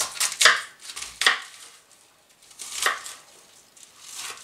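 Kitchen knife cutting a cabbage head into pieces on a plastic cutting board: four separate cuts, the first two close together, then one about a second in and the last near three seconds.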